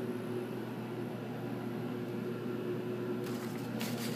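Mitsubishi hydraulic elevator travelling upward, heard from inside the car: a steady low machine hum with an even, pitched drone. A few faint clicks come near the end.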